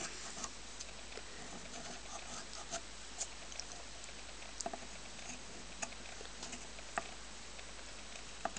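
Reed knife scraping the cane blade of a shawm reed: faint, short scratches and clicks at irregular intervals, one per stroke. The cane is being thinned to take down a ridge in the middle of the blade.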